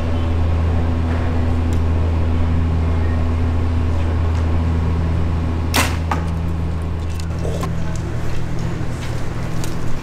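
A compound bow shot: a sharp crack about six seconds in, followed by a smaller knock, as the arrow strikes a foam 3D deer target. A steady low hum runs underneath.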